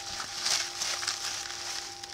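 Bubble wrap and a plastic bag crinkling and rustling as they are handled and pulled open, loudest about half a second in.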